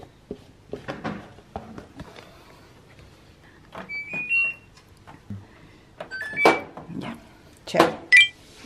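Front-loading washing machine's control panel beeping as its buttons are pressed: two short rising chimes of three notes each, about halfway through and again a couple of seconds later, among clicks and knocks from the machine being handled.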